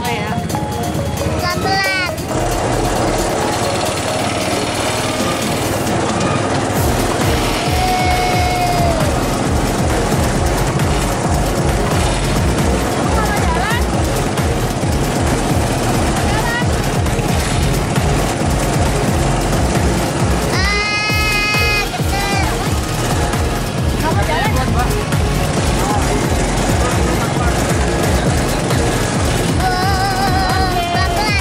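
Loud amusement-park din of music and voices, with a rapid low throbbing running underneath from about two seconds in.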